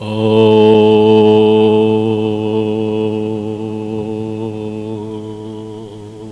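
A man's deep voice chanting a long, sustained Om on one steady pitch. It starts sharply, then slowly fades over about seven seconds as the breath runs out.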